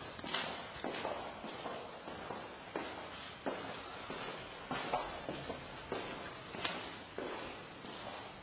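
A person's footsteps walking, one step roughly every half to one second, over a steady hiss.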